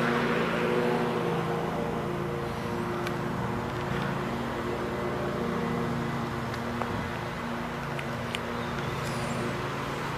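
An engine running steadily, a little louder in the first couple of seconds and then holding level, with a few faint clicks.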